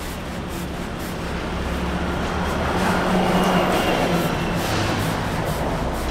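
City street traffic: cars driving past a crosswalk, the noise swelling to its loudest in the middle as a vehicle passes, over a steady low engine hum.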